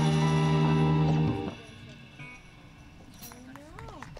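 Live jazz band with saxophones and electric guitars holding a final sustained chord that ends about a second and a half in. Faint voices follow near the end.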